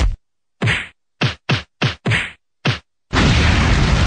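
Cartoon fight sound effects: seven quick, sharp punch-like whacks in about three seconds. Then, about three seconds in, a loud, sustained rushing blast of a fire burst begins.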